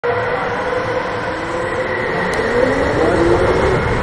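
Electric go-kart motor whining, its pitch rising as the kart gathers speed, over a steady noisy rumble from tyres and drivetrain.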